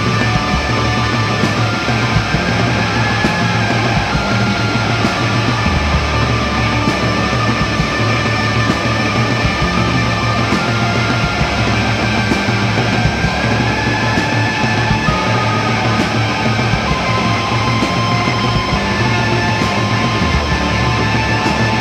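A live heavy rock band playing loud and steady: electric guitar through an Orange amplifier, bass guitar and drum kit.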